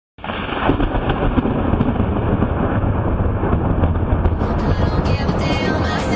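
A loud, muffled rumble with little treble for about four seconds, then music comes in about five seconds in.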